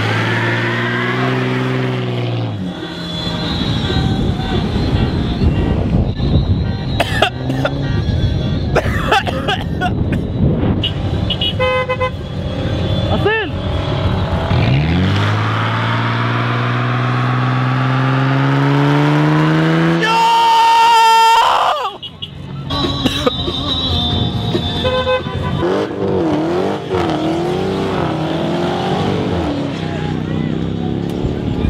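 Car engines revving hard during burnouts, one long rev rising in pitch for several seconds, with car horns honking and people shouting around them.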